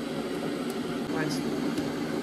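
A steady low mechanical hum, with two faint sharp clicks about a second apart as squares of milk chocolate are snapped off a bar and dropped into a small stainless-steel saucepan.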